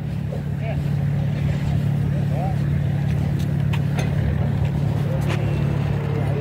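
A steady low engine drone that grows a little louder. A few sharp knocks ring out over it.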